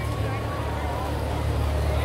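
Deep, steady low rumble from a large hall's sound system, under a faint murmur of audience voices.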